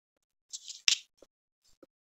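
A brief hiss, then a sharp click just before the one-second mark, followed by two fainter soft clicks.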